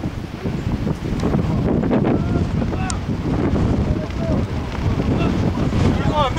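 Wind buffeting the camera microphone: a steady, loud low rumble.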